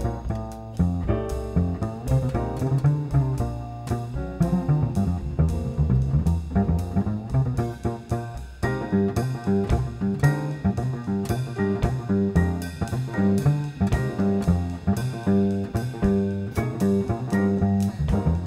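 Jazz instrumental passage: an upright double bass plucked with the fingers carries strong, moving low notes under piano chords and runs.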